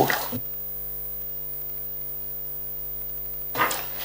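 Steady electrical mains hum, a low buzz with many evenly spaced overtones, cutting in about half a second in and cutting off abruptly near the end.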